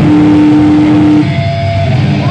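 Live metal band's distorted electric guitars holding one long, loud note that cuts off a little over a second in, with lower sound carrying on after it.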